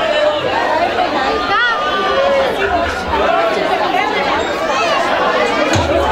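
Many people talking at once in a crowded hall, their voices overlapping into a steady babble.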